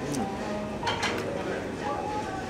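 A man chewing a bite of crispy fried catfish, with a short hummed 'mm' at the start and a few crisp crunching clicks about a second in, over soft background music.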